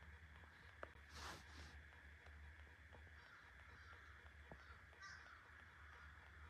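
A crow cawing faintly: one harsh caw about a second in and a weaker one about five seconds in.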